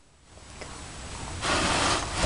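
Small wooden rabbit-hutch door sliding up in its frame, a rubbing, scraping sound of wood on wood that builds and is loudest near the end.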